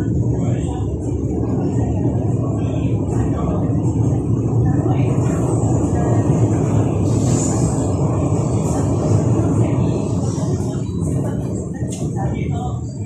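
Interior running noise of an MTR East Rail line electric train travelling at speed: a loud, steady low rumble of wheels on track, with a thin high hiss above it.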